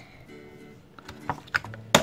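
A few light plastic clicks and then one sharp click near the end from the Toilet Trouble toy toilet's flush handle being pressed, over quiet background music.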